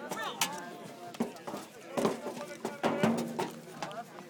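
Voices of several people calling and shouting across a baseball field, too distant to make out words, with a few sharp clicks or claps among them.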